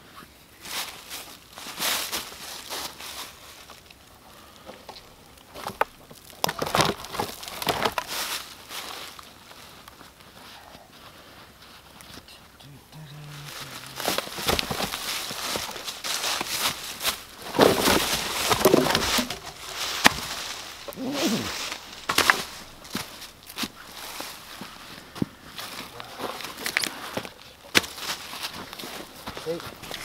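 Dry leaf litter rustling and crunching in irregular bursts under footsteps and the handling of camp gear, with scattered sharp clicks and crackles.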